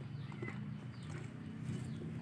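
Quiet background with a steady low hum and a few faint, sharp cracks of peanut shells being broken open by hand.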